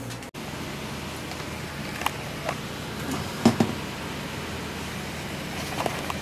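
Steady ventilation hum, with a few short, light clicks and knocks from about two seconds in, the sharpest about three and a half seconds in.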